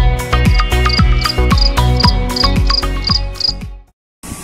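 Background music with a steady kick-drum beat, with a high, regular chirp repeating about three times a second over it. All of it fades out just before the end.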